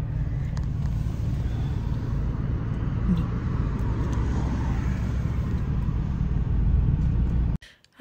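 Car interior noise while driving: a steady low rumble of engine and tyres on the road, heard from inside the cabin. It cuts off suddenly near the end.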